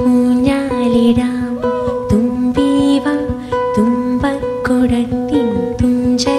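Melodic music with plucked string instruments, new notes struck about twice a second under a gliding melody line.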